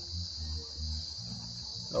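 A steady, high-pitched chorus of insects, crickets, that runs without a break, with a low, uneven rumble underneath.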